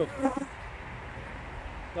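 Honeybees buzzing in a steady drone around an opened hive and a frame thickly covered in bees.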